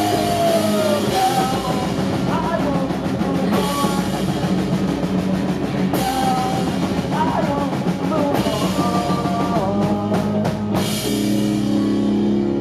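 Live pop-punk band playing: electric guitars and a drum kit, with a male singer. A cymbal crash comes about halfway through. Near the end the drums and vocal stop, leaving held guitar notes ringing.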